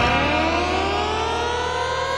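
A siren-like sound effect played through a sonidero DJ's sound system: one pitch rising in a long glide and slowing as it climbs, over a steady low drone.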